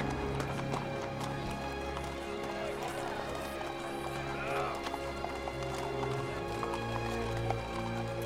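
Orchestral film score with long sustained notes, over street sounds of horse hooves clopping on cobblestones and a crowd's voices.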